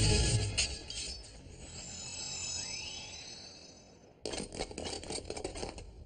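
Anime soundtrack: the background music fades out in the first second, leaving faint rising chime-like tones. About four seconds in, a sudden stretch of metallic clinking and clattering begins.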